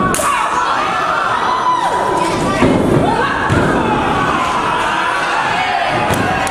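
Pro wrestlers' bodies thudding onto the ring canvas a few times, under a continuous mix of shouting and yelling voices from the crowd and ringside.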